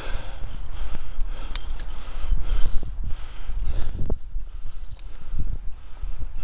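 Wind rumbling on the microphone of a camera riding on a moving bicycle, with scattered knocks and rattles from the bike as it rolls over bumps in the path.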